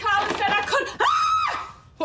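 A woman screaming in fright: short shrill cries, then one long high scream about a second in.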